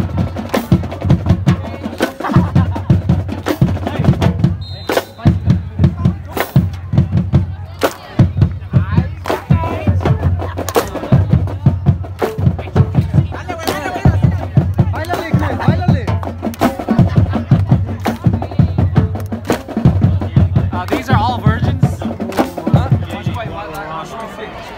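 Marching band drumline playing a loud, steady drum cadence on snare and bass drums, with voices of people around it.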